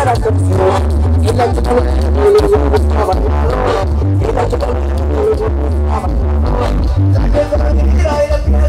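Loud Tierra Caliente regional dance music with a strong, steady low bass line under a busy melody.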